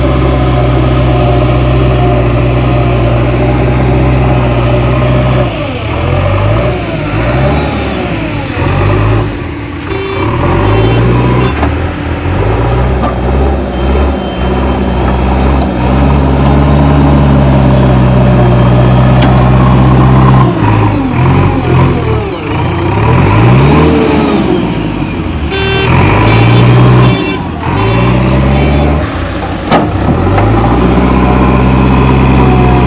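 Diesel engine of a JCB 3DX Xtra backhoe loader running loudly under load as its front bucket pushes soil, the engine note rising and falling several times as the machine works. Short clattering bursts come twice.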